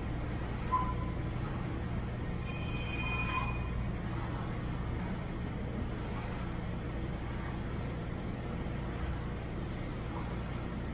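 Steady low hum of gym ventilation. Faint short hisses come about once a second in the second half.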